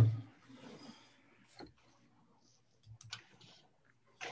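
A voice finishing a short "uh-huh", then faint small clicks and knocks over a video call, one about a second and a half in and a couple near the three-second mark.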